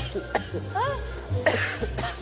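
Snatches of speech over steady background music, with a short harsh noisy burst about one and a half seconds in.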